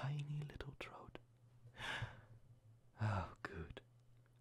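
A man's low voice close to the microphone, whispering and murmuring in short bits with a breath between them, over a faint steady low hum.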